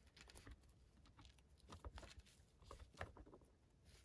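Very faint, scattered small clicks and ticks of fingers handling a plastic action figure and fitting a thin toy sword into its hand.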